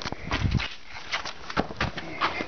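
Footsteps crunching and scuffing on gritty ground in a narrow slot canyon, as a string of short irregular scrapes and clicks, with a low thump about half a second in.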